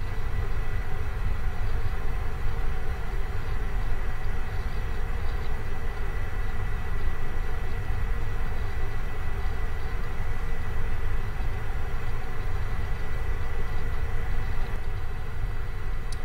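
Steady low rumble and hiss of the recording's background noise on an open microphone, with a faint steady high-pitched tone running through it and no distinct events.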